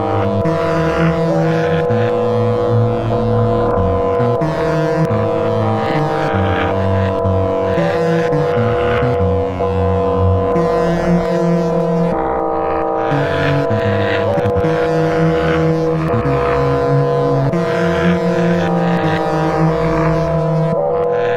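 Live-coded electroacoustic music from SuperCollider: a sustained drone of steady held tones, with a low note that shifts every second or two beneath it. Scattered clicks and short flurries of noise sound over it.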